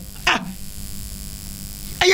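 A man's short vocal exclamation with a falling pitch just after the start, then a pause in the conversation filled by quiet studio room tone with a steady low hum.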